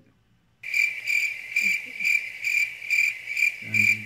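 Cricket chirping, edited in as a 'crickets' sound effect: a high, steady chirp pulsing about twice a second that starts abruptly about half a second in and cuts off just after the end.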